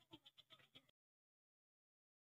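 Near silence: faint room tone that drops to complete silence about a second in.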